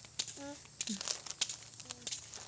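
Plastic snack packet crinkling in a small child's hands: quick, irregular crackles throughout, with a few short voice sounds.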